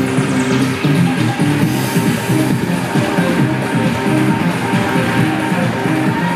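Loud upbeat music with a steady beat playing over the hall's sound system.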